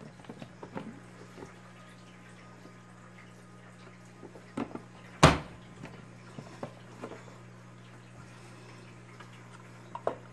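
Hinged lid of a plastic vegetable chopper pressed down to push dog roll through its blade grid: one loud sharp clack about five seconds in, with a smaller double knock just before it. Light plastic clicks and taps from handling the lid and the container come before and after.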